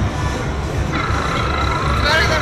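Arcade din: background music with a steady low beat, joined about a second in by a held electronic tone from a game machine.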